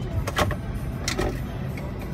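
Low steady rumble of car and traffic noise heard from inside a car's cabin in slow traffic, broken by two brief sharp noises about half a second and a second in.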